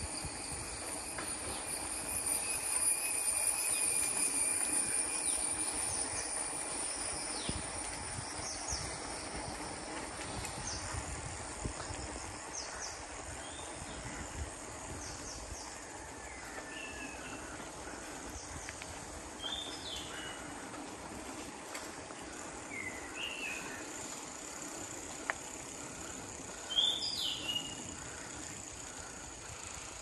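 Rural outdoor ambience: a steady high-pitched drone of insects over a constant low rumble, with a few short bird chirps, mostly in the second half.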